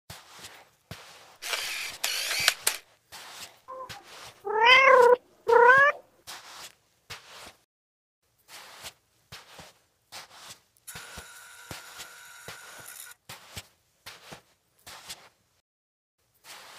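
A cat meowing twice in quick succession, two rising-and-falling calls that are the loudest sounds. Around them are short soft taps scattered throughout, a burst of hissing noise about two seconds in, and a steady electronic whine for about two seconds near eleven seconds in.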